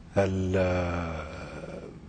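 A man's voice holding one long, level hesitation sound for about a second and a half, slowly fading: a drawn-out filler 'eeh' while he searches for the next word.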